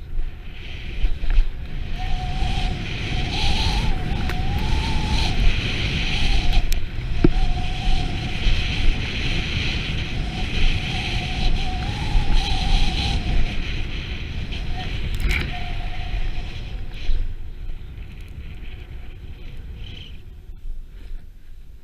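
Snowboard sliding and carving down a snow slope, with wind rushing over the camera microphone; the noise starts abruptly as the board gets moving and eases off in the last few seconds. A faint wavering whistle runs through much of it.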